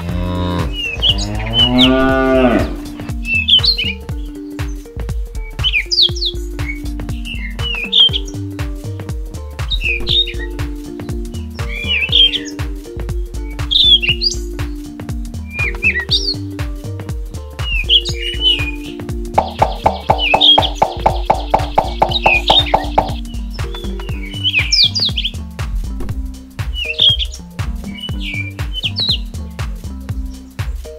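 A cow mooing once, a long call rising in pitch, over background music with birdsong chirping throughout. About twenty seconds in, a buzzing rattle lasts for roughly three and a half seconds.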